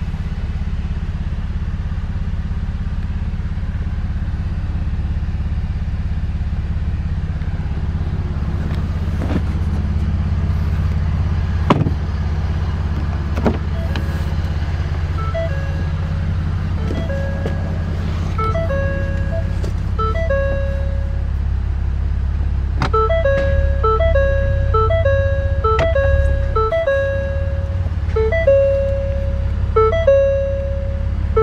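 A steady low rumble inside a pickup's cab, with a few sharp clicks and knocks in the middle. From about halfway, a simple melody of short repeated notes comes in and grows louder, like a jingle or light background music.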